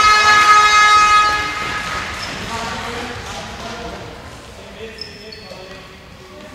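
A horn sounds one loud steady tone that stops about two seconds in, over the voices of people in a sports hall.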